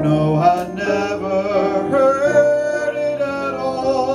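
Live jazz ballad: a man singing into a microphone, with long held notes, over piano accompaniment.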